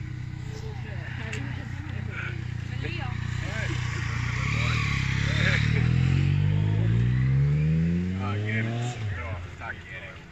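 A motor vehicle driving past on the road, its engine note climbing steadily in pitch as it accelerates, loudest a little past the middle and fading away near the end; voices talk quietly underneath.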